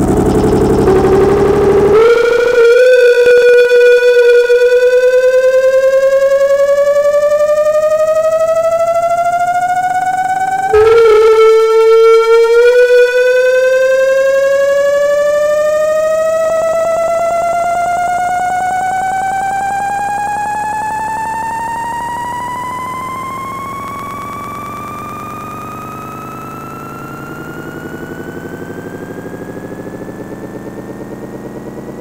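Synthesizer tone, rich in overtones, gliding slowly and steadily upward in pitch; about eleven seconds in it drops back down and begins the same slow climb again, growing gradually quieter.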